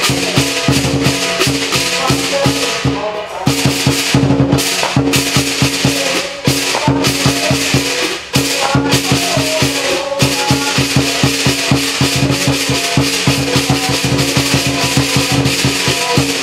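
Lion dance percussion band: the big lion drum, crash cymbals and gong played together in a fast, steady beat, the gong and cymbals ringing on between strikes, with a few brief breaks in the rhythm.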